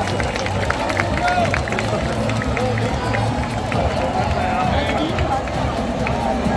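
Stadium crowd after a football match: many voices calling and chattering, with some drawn-out shouted or sung calls and music underneath, at a steady level.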